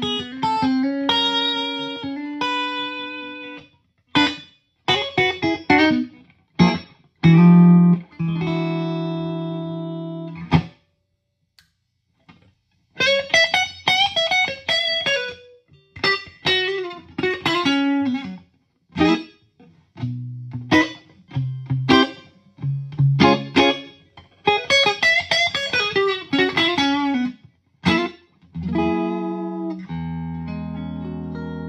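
Electric guitar with a hot bridge humbucker played clean through a modded JTM45-clone tube amp into a 4x12 cabinet with 100-watt Celestion G12K speakers: ringing chords and picked note runs, with a pause of about two seconds near the middle.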